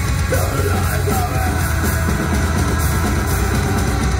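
Sludge/post-hardcore rock band playing live: distorted electric guitar, bass guitar and a drum kit, loud and steady with a heavy bass.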